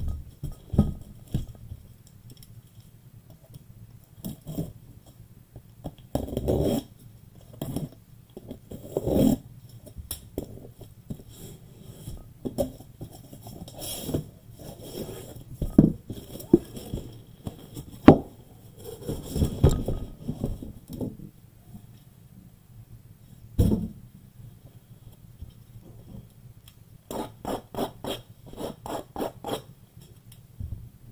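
A cardboard case and shrink-wrapped 2021 Bowman jumbo boxes being handled and stacked on a table: scrapes, knocks and thuds as boxes are set down, with a quick run of light clicks near the end.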